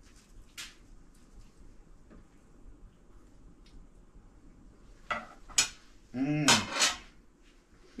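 Cutlery clinking and scraping faintly on a plate as a piece of pie is cut and eaten, with a sharp clink about five and a half seconds in. A short voiced sound follows about a second later.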